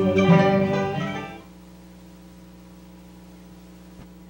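Acoustic string band with guitar and upright bass sounding its last chords, which die away about a second and a half in. After that only a steady low hum and hiss from the recording remain.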